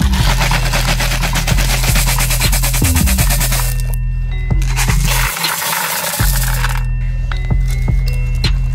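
Background music with a steady bass line, over a dense rattle of Mentos candies shaken in a wicker basket, in two stretches with a short break about four seconds in.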